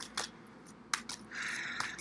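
Tarot cards being handled as one more card is drawn from the deck: a few light clicks, with a soft rustle in the second half.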